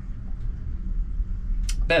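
A steady low rumble, with a man starting to speak near the end.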